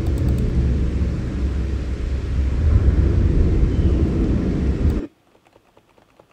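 A stock 'windy forest' ambience recording playing back: loud, steady wind noise, deepest in the low range, that cuts off suddenly about five seconds in when playback stops, leaving faint clicks.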